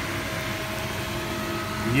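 Sucuk slices and eggs frying on a ridged commercial griddle: a steady sizzling hiss over the even hum of a kitchen fan.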